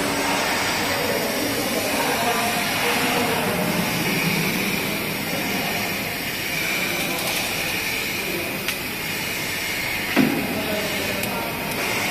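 BOPP tape slitting and rewinding machine running with a steady mechanical hiss and hum. There is a light knock near the end and a louder one a little after it.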